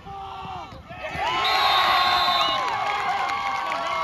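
Football crowd in the stands cheering and whooping for a touchdown catch. It is fairly quiet for the first second, with one nearby voice shouting, then breaks into loud cheering about a second in that holds to the end.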